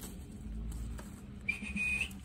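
A short, high, clean whistle, one steady note held about half a second, starting suddenly near the end.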